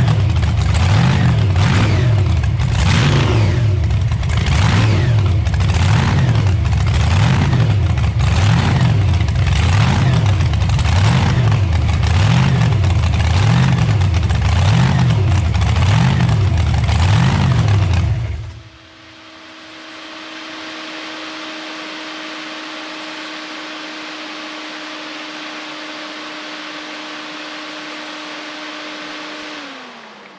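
Supercharged, mechanically fuel-injected V8 of a T-bucket hot rod running loud, its sound rising and falling about once a second as it is tuned, then shutting off about 18 seconds in. A quieter steady hum follows and winds down in pitch near the end.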